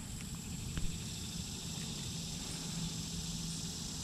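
Quiet outdoor background: a low rumble with a faint, steady high-pitched tone over it and a single small click about a second in.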